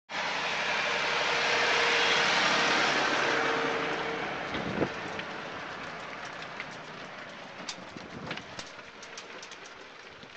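Farm tractor pulling a train of wooden fruit-bin trailers passes close by: its engine runs with the trailers rattling along, loudest about two seconds in and then fading as it moves away. Scattered clicks and knocks follow in the second half.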